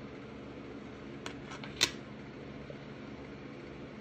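A steady low hum of a fan or air conditioner, with three short clicks of handling noise near the middle; the last and loudest comes a little under two seconds in.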